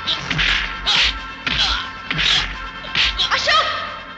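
Film fight sound effects: a run of swishing punch hits landing, about one every half second, six or so in all.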